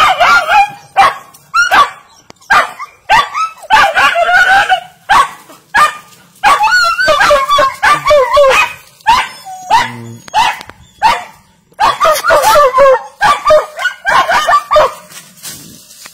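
A dog barking over and over, a bark or two every second, as it clings up a banana plant's trunk, barking at an animal up in the plant.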